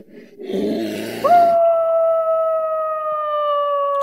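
A recorded bear's rough growl, then a wolf's long howl that starts about a second in and slowly falls in pitch as it is held.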